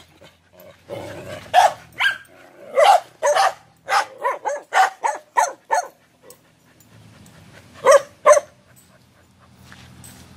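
Dog barking in play: a quick run of about ten short barks, then a pause and two more barks near the end.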